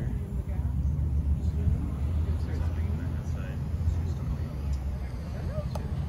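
Steady low rumble with faint voices in the background.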